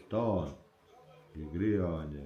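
Only speech: a man talking, two short phrases with a pause of about a second between them.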